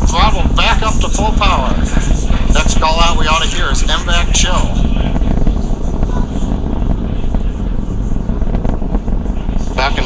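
Low, steady rumble of a Falcon 9 rocket's first-stage engines climbing away, heard from the ground. People's voices rise and fall over it in the first few seconds.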